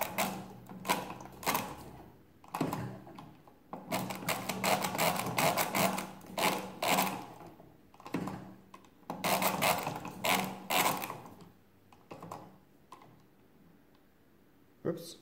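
Antique Rapid pinwheel calculator's gearwork clicking and clattering as its hand cranks are turned, in about five runs of one to three seconds each. The operator is clearing and resetting the registers, the step in which one column of this 1920s machine fails to clear and sets itself to nine.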